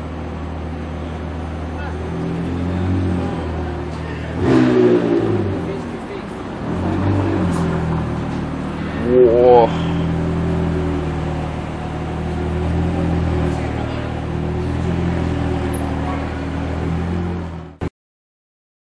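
McLaren 720S twin-turbo V8 running at low revs as the car creeps forward. There are two short, louder moments, about four and a half and nine seconds in. The sound cuts off suddenly just before the end.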